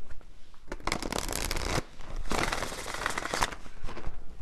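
A deck of tarot cards being shuffled by hand: two bursts of rapid card noise, each about a second long, with a brief pause between.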